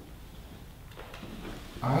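A pause in a man's speech: quiet room tone with a faint click about a second in, then his voice starts again near the end.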